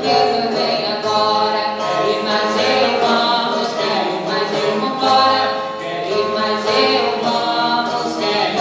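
Live Brazilian northeastern cantoria: a man and a woman sing together, accompanied by two acoustic guitars.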